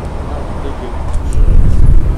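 Low rumble of street traffic that swells about a second and a half in.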